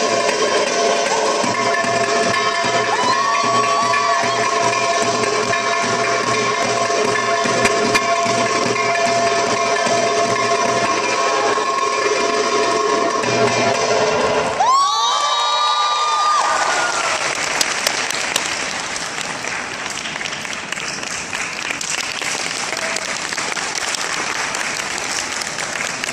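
Belly-dance drum-solo music with sustained tones stops suddenly a little over halfway through. A crowd then applauds and cheers.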